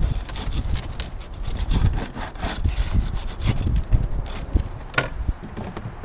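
A plastic propolis trap being scraped and knocked against a plastic tub to loosen the propolis, with irregular scraping and dull knocks. There is one sharp click about five seconds in.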